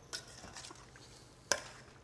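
Metal spoon stirring a wet ceviche mix in a stainless steel mixing bowl: a few soft scrapes and ticks, then one sharp clink of the spoon against the bowl about a second and a half in.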